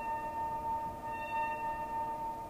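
Ambient background music of sustained, ringing singing-bowl-like tones, one steady tone held throughout while other tones fade in and out around it.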